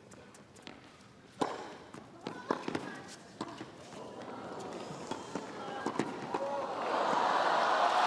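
Tennis ball struck back and forth with racquets in a rally: a series of sharp hits about a second apart. Near the end the crowd noise swells as the point reaches the net.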